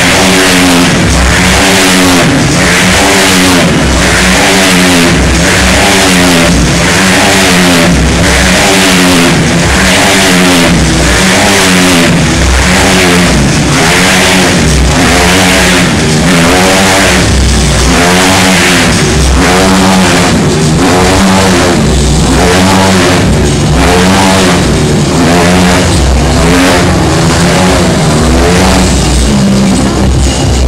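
Motorcycle engines revving continuously as riders loop around inside a steel mesh globe of death, the engine pitch rising and falling about once a second with each lap.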